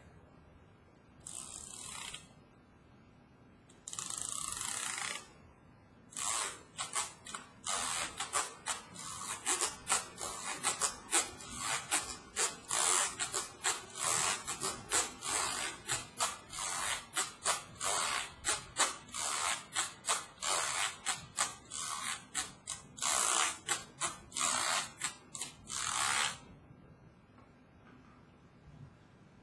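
Plastic fork scraped along the spiral binding of a book, played as a homemade scraping instrument with a ratchet-like rasp. Two single strokes come first, then a quick rhythmic run of strokes for about twenty seconds that stops shortly before the end.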